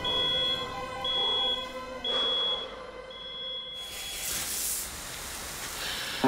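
An electronic alarm beeping: a high, steady beep repeated about once a second, four times, the last one held longer, over a sustained low drone. A short burst of hiss follows about four seconds in.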